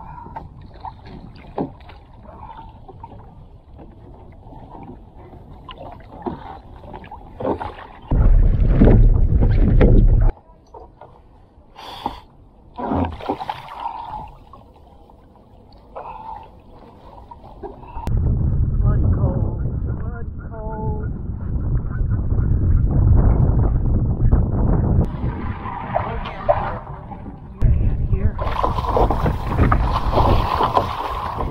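Water sloshing and splashing against a sea kayak's hull as a swimmer in a drysuit works through a paddle float self-rescue, hooking a heel into the cockpit and hauling himself up onto the back deck. Loud low rumbling buffets the microphone about eight seconds in, for several seconds from about eighteen seconds in, and again near the end.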